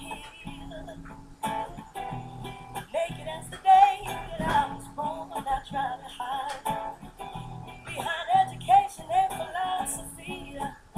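A song with acoustic guitar and a voice singing over it.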